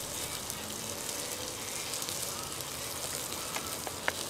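Wood fire burning with dirty engine oil in a metal mesh fire pit: a steady hiss, with a couple of small crackles near the end.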